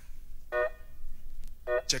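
Funk music between chanted vocal lines: two short held chords, about a second apart, over a low steady bass.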